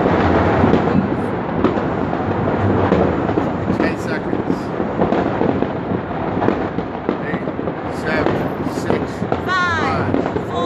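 Many fireworks and firecrackers going off at once across a town: a continuous rumble of overlapping bangs and crackles.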